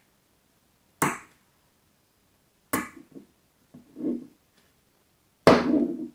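Small magnetic balls clacking together as they are handled and snapped into place: a sharp click about a second in, another near three seconds with softer rattling after it, and a louder, longer clack near the end.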